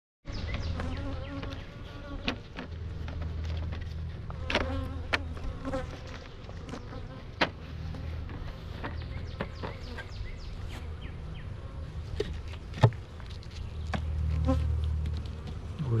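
Honeybees buzzing around an open hive, a low hum that swells and fades as bees fly close, broken by a few sharp clicks.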